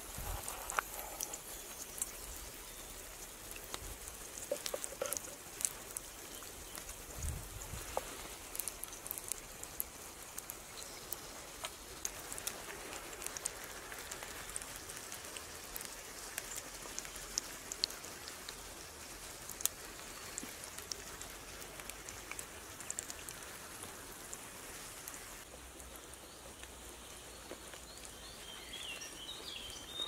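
Burgers and onions frying in an oiled frying pan over a campfire, sizzling steadily with many scattered small pops and crackles.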